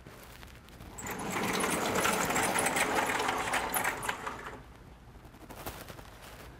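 Sliding chalkboard panels being pushed up in their frame: a rolling, rattling rumble lasting about three seconds, starting about a second in and dying away.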